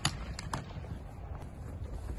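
Footsteps on grass with wind rumbling on the microphone, and a few sharp clicks in the first half second.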